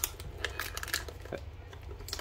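Crinkling and tearing of a Panini Flux basketball card hanger's packaging as it is opened, a run of small crackles and clicks.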